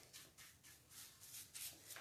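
Faint, quick scratching of a paintbrush stroking chalk paint across a license plate in repeated crosshatch strokes.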